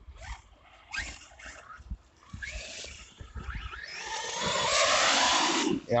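Electric RC monster truck accelerating at full throttle, its motor whine rising, then a loud rush of churning water as it ploughs through a deep muddy puddle. The rush begins about four seconds in and stops abruptly just before the end.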